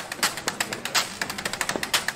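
A fast, uneven run of sharp percussive clicks and taps in a break between two brass phrases of a swing-style jingle, with no held notes.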